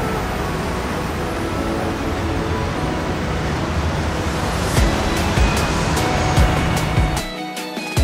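Background music over a steady rush of outdoor road noise; a regular beat comes in about halfway through. Near the end the road noise cuts out suddenly, leaving the music alone.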